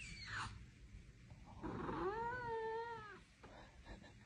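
Long-haired colourpoint cat meowing once: a drawn-out meow of about a second and a half near the middle, rising, holding and then falling in pitch. A brief falling cry is heard at the very start.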